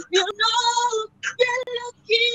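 A woman singing a gospel song unaccompanied, in short phrases of held notes with brief breaks for breath.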